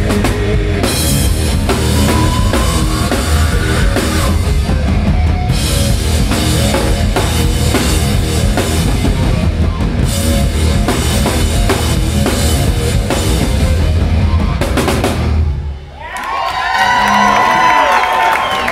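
A hard rock band plays live, with heavy drums, distorted electric guitars and bass pounding through the end of a song. The music stops about two seconds before the end, and the crowd cheers and whistles.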